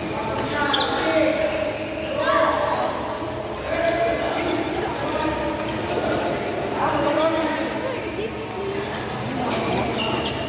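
Badminton doubles play in a large indoor hall: rackets striking the shuttlecock and players' feet on the court, with voices running throughout.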